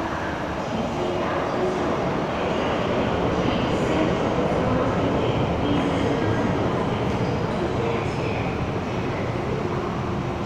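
MTR M-Train electric multiple unit running into an underground station behind platform screen doors: a continuous rumble of wheels and motors, a little louder through the middle.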